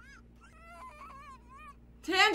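A dog whimpering: several faint, short, high-pitched whines that rise and fall.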